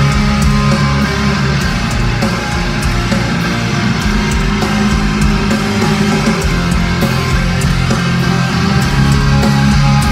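Heavy rock band playing live in an arena: distorted electric guitars over a heavy low end with drum hits, loud and dense, the opening of a new song.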